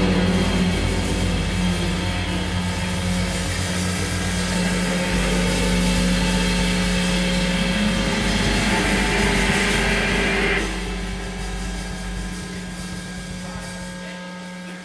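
Live rock band's electric guitar held in a sustained, droning wash through effects pedals, one low note ringing steadily underneath. About ten seconds in the bright upper part cuts away and the sound fades down toward the end.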